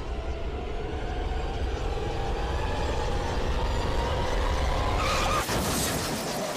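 Steady car road rumble under a low, tense drone, then about five seconds in a brief, loud screech of skidding tyres that cuts off sharply: the skid at the start of a car crash.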